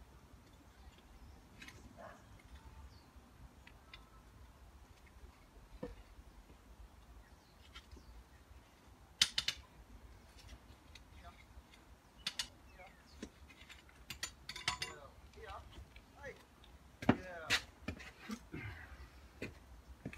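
Scattered sharp clicks and knocks of hand tools being worked at drilled holes low on a stone wall, the loudest about nine seconds in and again around seventeen seconds, over a low steady rumble.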